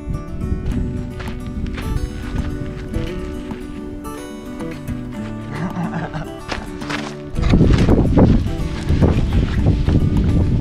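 Background music with sustained notes. About seven seconds in, a vehicle passes close by on a gravel road with a sudden loud rush of tyre and engine noise that lasts to the end.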